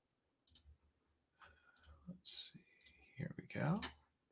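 A few faint, scattered clicks, with a short, quiet murmur of voice near the end.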